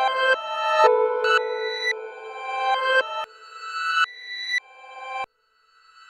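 Electronic improvisation from a Max/MSP patch: layered pitched tones, run through comb and allpass filters and delay lines, that swell up and then cut off suddenly, one after another, with a brief silence shortly before the end.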